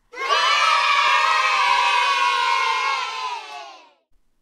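A group of children cheering together in one long cheer, sliding slightly down in pitch and fading out near the end.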